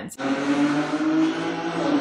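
A steady mechanical drone with a low hum and a hiss over it, engine-like, that holds level and then fades out.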